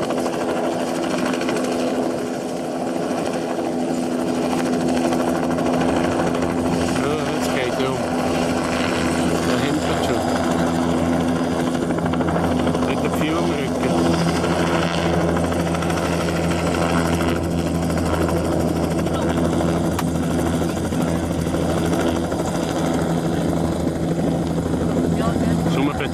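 Two-bladed light turbine helicopter running steadily at low altitude, a constant deep rotor and turbine drone. Its lowest hum grows stronger from about halfway through as the helicopter comes in close.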